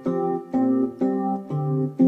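Electronic keyboard sounding a three-note chord each time one key is struck, about twice a second, four times. A MIDI harmonizer holds the C, adds a voice a fifth above it, and rotates the third note among four pitches, so part of the chord changes from strike to strike.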